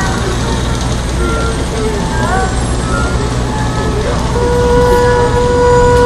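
Erhu being bowed: a few short, wavering notes that slide upward in pitch, then one long held note from about two-thirds of the way in. A steady low rumble runs underneath.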